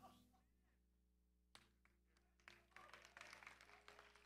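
Near silence: a faint steady hum, with a faint click about a second and a half in and a few scattered faint ticks later on.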